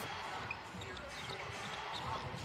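Basketball being dribbled on a hardwood court, faint soft thuds under quiet arena ambience.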